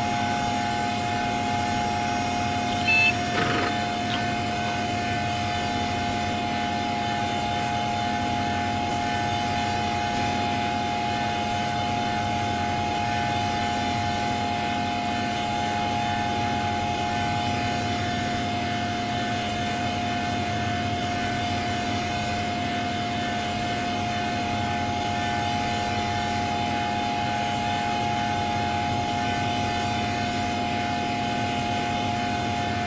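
A Windows system sound run through a 'G Major' audio effect, stretched into a steady electronic drone of several held tones. A short high blip comes about three seconds in.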